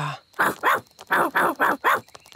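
Cartoon ladybird characters barking like dogs, their way of talking: a quick run of about six short barks.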